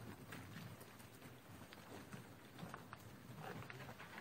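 Near silence: faint room tone of a large hall, with a few scattered light clicks and taps.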